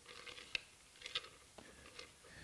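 Faint handling of a wooden jig: a sharp click about half a second in, then a few soft taps and rubs of wood.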